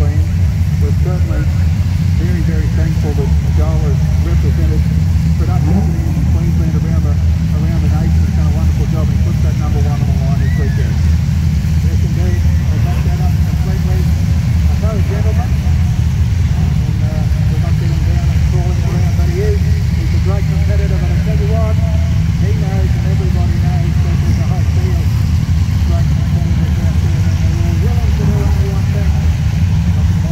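Production sedan race car engines running steadily at low revs, a constant low rumble, with indistinct voices over it throughout.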